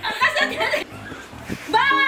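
Young women laughing and chuckling, with a short lull about halfway through, over background music with a steady low beat.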